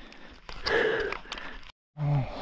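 A person's breathy exhale or gasp, about a second long, starting about half a second in. The sound cuts off abruptly shortly before the end.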